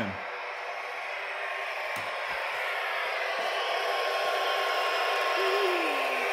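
Steady rushing noise, slowly growing louder, with a single click about two seconds in and a brief voice-like sound near the end.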